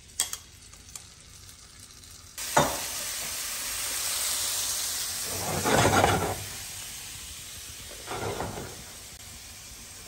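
Marinated prawns dropped into hot melted butter in a frying pan, starting a sudden loud sizzle about two and a half seconds in. The sizzle runs on and swells louder twice as the prawns fry.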